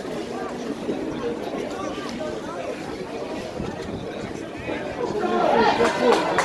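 Indistinct chatter of spectators and players' voices at a rugby match, no words clear, growing into louder shouting near the end as play opens up.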